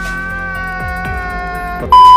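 Background music: a held electronic chord over a regular falling bass thud. Near the end a loud, steady, high beep cuts in.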